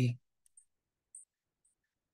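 The last word of a lecturer's sentence ends just after the start, followed by near silence broken by three very faint, short high ticks.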